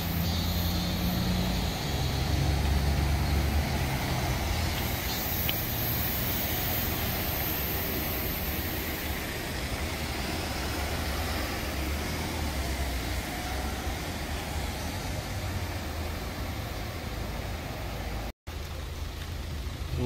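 Street traffic: cars and vans idling and passing on a wet road, a steady mix of engine rumble and tyre hiss. The sound cuts out for a moment near the end.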